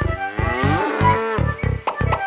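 A cartoon cow mooing, one long call that slides in pitch, over the regular beat of a children's song intro.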